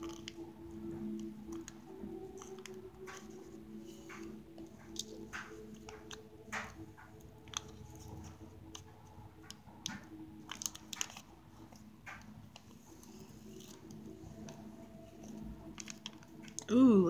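Quiet handling sounds of hand beadwork: scattered small clicks, crackles and rustles as a needle and thread are worked through a felt backing and seed beads are stitched down. A steady low hum runs underneath.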